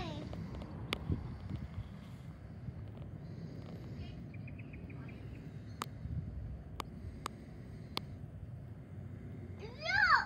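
Birds calling overhead: a long call sweeping down in pitch at the start and sharp rising-and-falling calls near the end. Between them come a brief rapid ticking call and a steady low background rumble.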